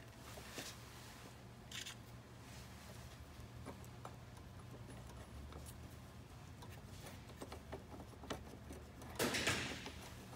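Faint handling sounds as air-conditioning lines are wiggled into an expansion valve block: light clicks and rubbing of hands on metal fittings and hoses, with a brief louder rustle near the end, over a steady low hum.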